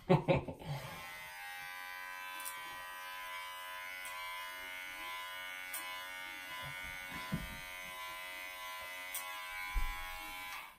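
Electric hair clippers running with a steady, even buzz as they cut and blend the hair at the side of a man's head into a fade. A short laugh comes at the start.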